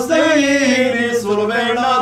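Male liturgical chanting of an Armenian Apostolic hymn, long held notes whose melody falls slowly and then rises near the end.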